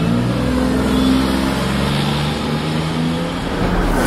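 Porsche 911 Carrera's flat-six engine accelerating, its note shifting pitch in steps.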